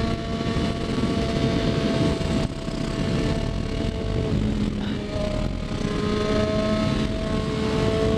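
Triumph Daytona 675's three-cylinder engine running at steady revs at road speed, under heavy wind rush on the helmet microphone. Its pitch drops out and settles at a slightly different note about halfway through.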